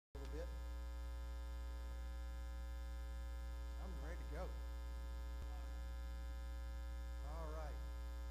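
Steady electrical mains hum from the sound system, a low drone with a ladder of higher overtones, with a faint voice murmuring twice, about halfway through and near the end.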